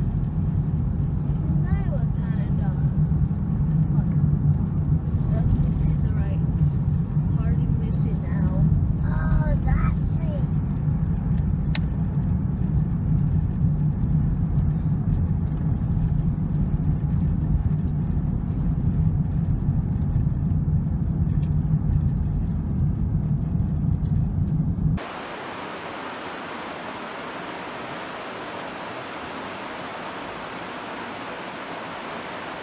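Steady low road rumble inside a moving car, with faint voices talking during the first ten seconds or so. About 25 seconds in it cuts suddenly to the quieter, even rushing of river water running over rocks.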